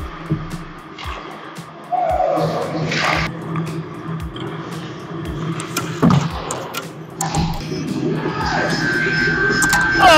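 Ice-hockey game sound with music playing: sharp clacks of sticks and puck on the ice, a few distant shouts, and a steady high tone that comes in near the end.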